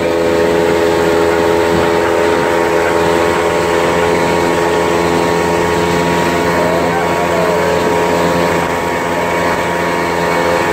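A bass boat's outboard motor running steadily at high speed, a constant multi-tone hum over the rush of water.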